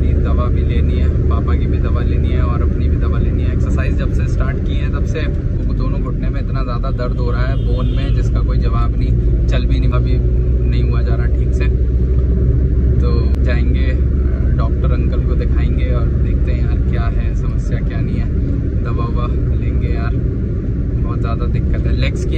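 Steady low rumble of a car driving along a road, heard from inside the cabin, easing slightly in the later part.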